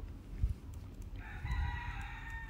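A single long, drawn-out animal call with several steady pitched layers, starting a little past halfway and running on past the end, falling slightly at its tail. A low thump comes about a quarter of the way in.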